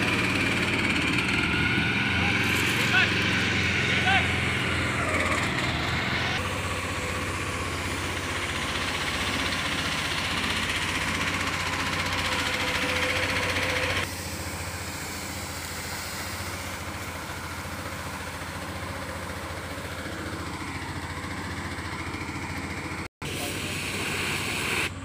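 Engine of a small fire tender running steadily to pump water, with the hiss of a hose jet spraying onto smouldering wood and ash. Voices are heard now and then over it.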